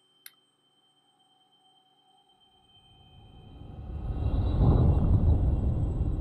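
A film sound effect: a brief high ping just after the start, then a low rumbling whoosh that swells up from near silence about two and a half seconds in and is loudest near the end.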